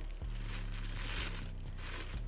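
Black tissue paper being unwrapped by hand, crinkling and rustling in a few uneven bursts.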